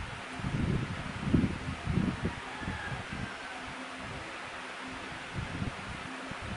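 A steady background hiss, with a few low, muffled bumps and rustles in the first two seconds or so.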